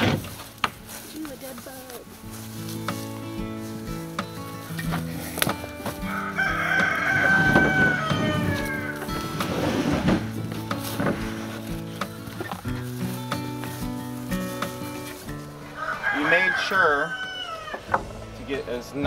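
A rooster crowing twice, about six seconds in and again near the end, over background music with a steady run of low notes. Scattered knocks of wooden boards being handled.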